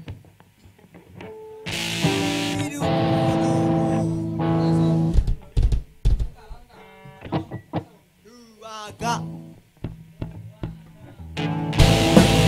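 Electric guitars played loosely between songs: a loud held chord about two seconds in, then scattered single plucked notes. Just before the end the full rock band comes in with drums and distorted guitars.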